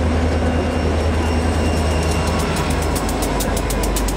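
Diesel locomotives of a passenger train passing close by with a deep, steady engine drone. About halfway through, the passenger cars follow and their wheels click rapidly over the rail joints.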